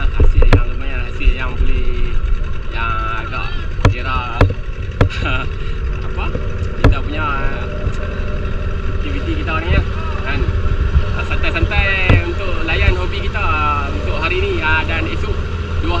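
A small boat's outboard motor running steadily as the boat travels along the river, with sharp knocks from the hull striking the water. Voices are heard over it from a few seconds in.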